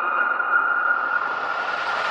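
Electronic dance music build-up: a noise sweep rising steadily in pitch over fading held synth tones, with no beat.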